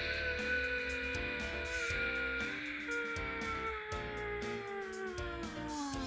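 A boy's voice holding one long, loud wail that slowly falls in pitch and drops away near the end, over background music with a steady beat.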